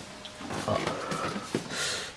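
Indistinct, low human vocal sounds, not clear words, ending in a breathy exhale.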